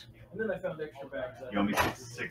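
A man muttering low, broken speech while a game die is handled, with a sharp click near the end as a die is turned and set down on the playmat.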